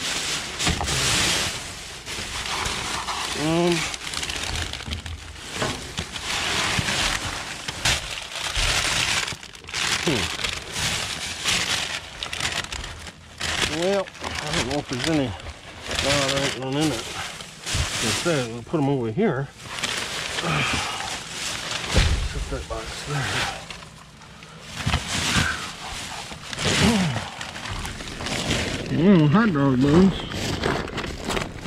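Plastic bags and bubble wrap crinkling and rustling in bursts as gloved hands dig through a dumpster's trash, with a person's voice now and then.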